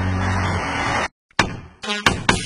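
Cartoon engine sound of the toy-like construction machines driving off, a steady low rumble that cuts off about a second in. After a brief silence comes a single sharp knock.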